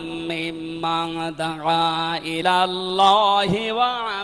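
A man's voice chanting a sermon line in a slow, sung cadence, holding long notes at a steady pitch with melodic turns between them.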